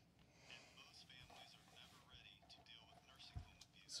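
Near silence with faint, quiet voice sounds and a soft low thump about three and a half seconds in.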